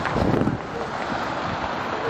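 Wind buffeting the camera's microphone over steady street noise, with a strong gust in the first half second.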